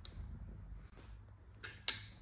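Pliers working a small metal hook open: faint handling, then a sharp click near the end.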